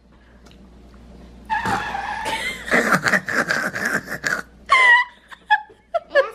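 Laughter, choppy and breathy, starting about a second and a half in and running for about three seconds. A few short, higher laughs from a young girl follow near the end.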